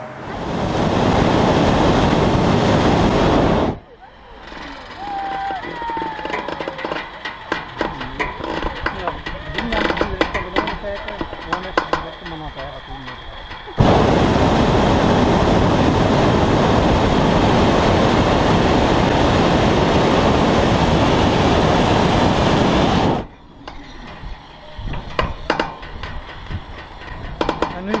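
Hot air balloon's propane burner firing in two blasts, a short one of about three seconds at the start and a long one of about nine seconds in the middle, each starting and cutting off abruptly; the burner heats the envelope to climb. Voices between the blasts.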